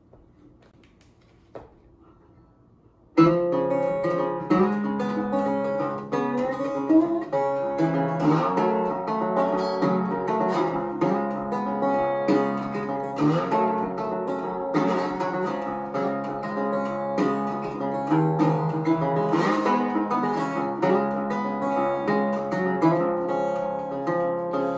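Recording King metal-body resonator guitar played fingerstyle with a slide, notes gliding between pitches in a slow blues. It starts abruptly about three seconds in, after a few quiet seconds with a faint tap.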